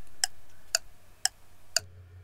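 A clock ticking steadily, about two ticks a second. Just before the end the ticking stops and gives way to a faint low hum.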